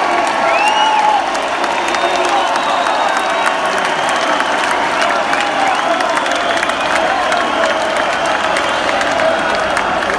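Large arena crowd applauding and cheering steadily, with whistles and shouts above the clapping.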